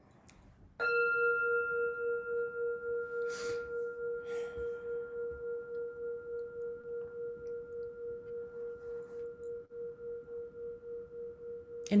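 A singing bowl struck once, about a second in, then ringing on with a pulsing, wavering hum that slowly fades; its higher overtones die away within a few seconds.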